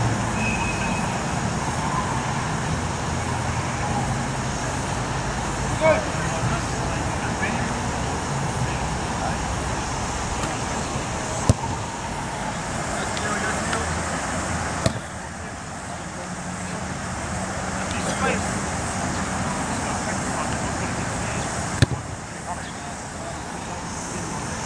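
Steady road traffic noise with distant voices, broken by a few sharp knocks.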